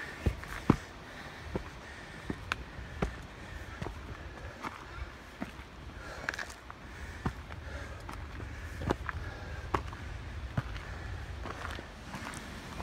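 Hiking-boot footsteps climbing a rocky trail, irregular knocks and scuffs of soles on rock and grit about once a second, over a low steady rumble.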